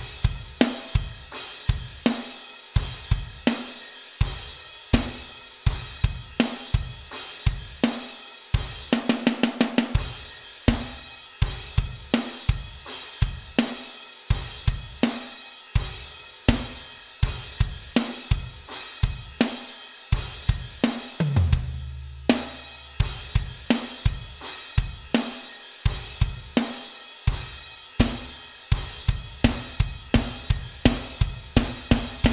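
Electronic drum kit playing a steady pop-punk chorus groove of bass drum, snare and cymbals. About nine seconds in there is a quick run of fast strokes, and around twenty-one seconds a low, rumbling fill before the groove picks up again.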